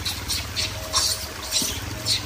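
Rhesus macaque chewing juicy fruit with its mouth open: wet smacking sounds, about two a second, over a low steady hum.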